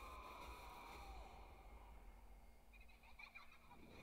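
Near silence: a faint steady low hum, with a faint high tone that slides down and fades away about a second in.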